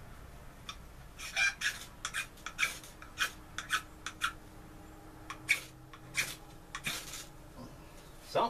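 A knife scraped again and again down a small ferrocerium (ferro) rod to throw sparks onto tinder: about fifteen short, sharp rasps, irregularly spaced. The tinder is not catching, and the small rod is a struggle to get sparks from.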